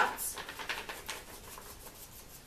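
A sheet of paper rustling as it is handled and folded, busiest in the first second and fading away after that.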